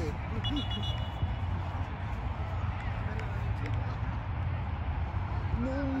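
Open-air ambience at a sports field: a steady low rumble with no distinct events, and a brief faint high tone about half a second in. A man shouts in Spanish at the very start and again at the end.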